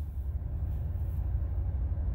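Jeep Gladiator's non-turbo 3.6-litre V6 petrol engine idling steadily, a low rumble heard from inside the cab. It is left idling to cool down after hard towing of a heavy trailer.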